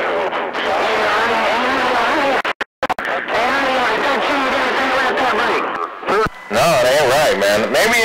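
A man's voice coming over a CB radio receiver, garbled and distorted so the words can't be made out, dropping out completely for a moment about two and a half seconds in. The transmission isn't sounding right: the operator suspects the talker is too close to his microphone, a fault, or other stations coming down on the channel.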